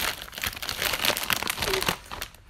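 Plastic potato chip bag crinkling and crackling irregularly as it is handled and pulled open.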